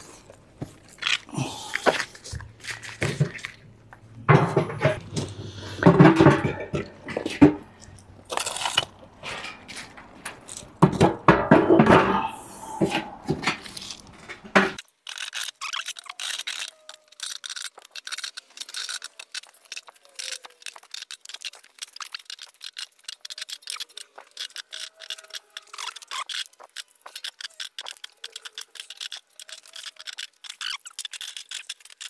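Quartz and amethyst crystal plates knocking, scraping and clinking against one another and against the inside of a steel drum as they are packed in by hand. The first half holds heavier irregular clunks and scrapes; from about halfway the sound turns to a long run of light, quick clinks.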